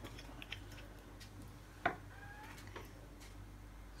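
Faint handling noise from small objects on a table: a few light clicks and one sharper tap nearly two seconds in, over a low steady hum.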